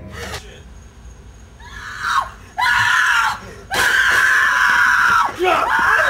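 Screaming in fright at the sight of a masked clown: a short scream about two seconds in, then two long, loud screams, the last held for over a second.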